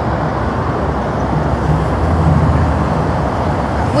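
Steady freeway traffic noise, with the low drone of heavy vehicle engines running.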